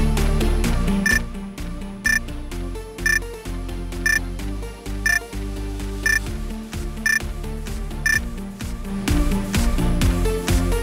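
Electronic workout background music with a short high countdown beep once a second, eight in all, marking the last seconds of an exercise interval. The music drops back under the beeps and returns fuller near the end.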